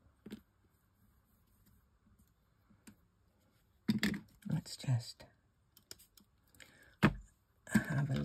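Light clicks and taps of a plastic ink pad and craft tools being handled on a desk. About seven seconds in there is one sharp knock as the ink pad is set down.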